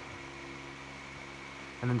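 A steady background hum made of several constant low tones and a faint high whine, unchanging throughout. A man's voice starts just before the end.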